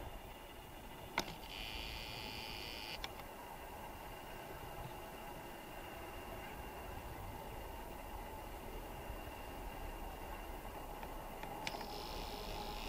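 Quiet outdoor ambience with a low steady rumble. About a second in there is a click, then a short whir lasting a second and a half that ends in another click: the camera's zoom motor zooming in.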